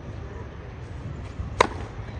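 Tennis racket striking the ball on a serve: one sharp crack about a second and a half in.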